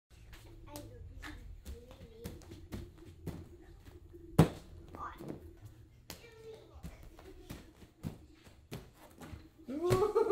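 Bare feet slapping and thudding on rubber gym flooring and mats as small children jump and land, in irregular short knocks with one loud thud about four seconds in. Children's voices are heard faintly between the knocks, and a burst of child laughter starts right at the end.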